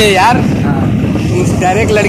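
A motorcycle being ridden at road speed: a steady low rumble of engine and wind on the microphone, with voices talking briefly at the start and again near the end.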